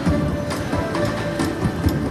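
Fu Dao Le slot machine playing its bonus-round music and spin sound effects while its reels spin and begin to stop during free games.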